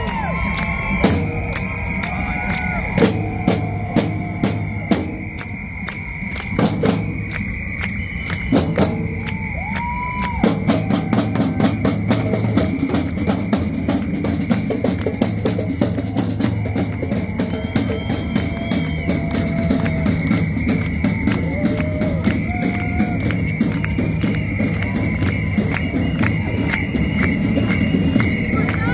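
A group of marching drums, snare-type and larger drums struck with sticks, playing a fast, steady rhythm. A steady high tone and scattered rising-and-falling calls sit over the drumming, which grows fuller about ten seconds in.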